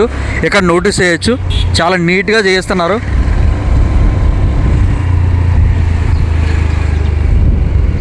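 A motorbike riding along a road, a loud, steady low rumble of engine and wind on the microphone; a man talks over it during the first three seconds.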